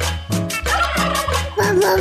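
A turkey-gobble sound effect, warbling and wavering in pitch, played over Latin dance music with a steady bass beat, as a sonidero's shout-out effect.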